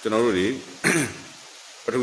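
A man's voice briefly, then a short throat clearing about a second in, followed by a pause before he speaks again.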